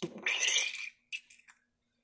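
Liquid poured from a plastic measuring cup onto baked biscuits on a hot baking tray: a brief hiss for about a second, then a few faint ticks.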